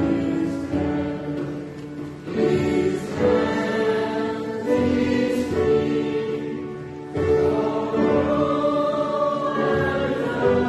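A slow hymn sung by a choir with accompaniment, in held phrases that change every couple of seconds.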